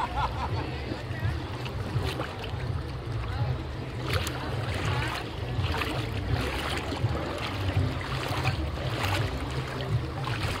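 Small waves lapping and splashing against shoreline rocks in shallow sea, the splashes coming more often from about four seconds in, over a steady low rumble of wind on the microphone.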